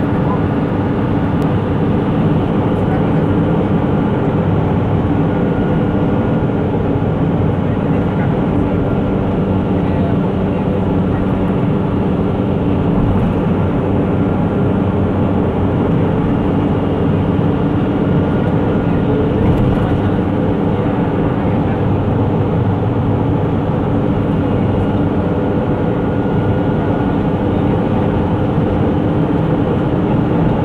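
Steady engine drone and road noise inside a moving vehicle's cabin at cruising speed, with a low held engine hum.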